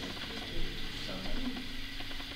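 A rapid run of small mechanical clicks.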